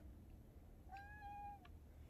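A domestic cat gives one short, faint meow about a second in, holding its pitch and dropping slightly at the end.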